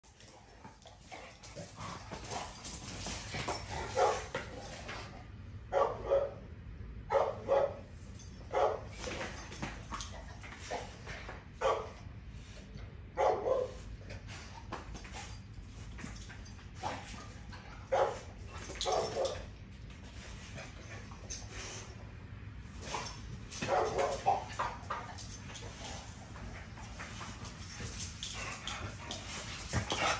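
Two American bully pit bulls play-fighting, with short barks and yips breaking out every few seconds, several in quick succession near the middle and again toward the end.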